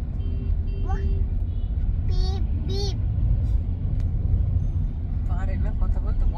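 Steady low rumble of a moving car heard from inside the cabin, with a toddler's short high-pitched vocal sounds several times, a pair just past two seconds in and another near the end.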